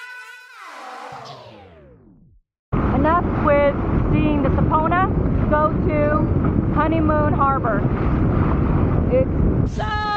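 Music ends in the first two seconds with a falling pitch sweep. After a moment of silence, a Sea-Doo personal watercraft is heard under way: loud wind buffeting the microphone over the engine and spray, with people's voices over it.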